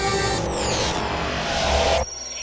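Hardstyle electronic dance music at a transition: a rising noise sweep with whistling tones gliding downward, building up and then cutting off abruptly at the very end.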